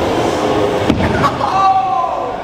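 Scooter wheels rolling on a concrete skatepark floor, with a sharp clack about a second in as the scooter lands a whip trick. A voice then calls out in one long, drawn-out shout.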